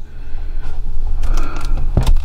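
Handling noise from a handheld camera being moved: rubbing and crackling on the microphone with a few clicks, ending in a sharp knock, over a steady low hum.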